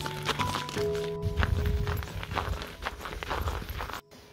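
Background music with sustained notes, under a quick, irregular run of crunching footsteps on packed snow. Both stop abruptly right at the end.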